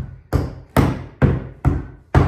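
Rubber mallet striking a solid oak tongue-and-groove floorboard, four even blows about two a second, each with a short woody ring, knocking the board tight onto its neighbour's tongue.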